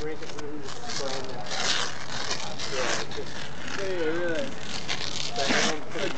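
Elastic adhesive bandage being pulled off its roll and wrapped around a taped knee, giving a few short ripping bursts. Voices talk in the background.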